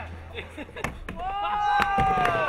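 Skateboard knocking on a wooden mini ramp: several sharp clacks of the board hitting the deck as a skater lands and drops in. A long drawn-out shout begins about a second in, and a low music bed fades out early.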